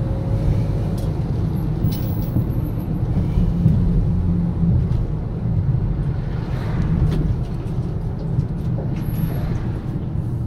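Car driving on an open road, heard from inside the cabin: a steady low rumble of engine and tyre noise.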